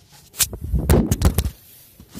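A phone being dropped while recording: a cluster of sharp knocks and a heavy rumble of handling noise on its microphone, lasting about a second.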